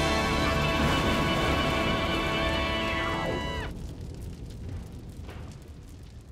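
Opening theme music of a TV sports show: a loud held chord over a deep low rumble. About three and a half seconds in, the notes slide down in pitch and break off, leaving a quieter fading tail.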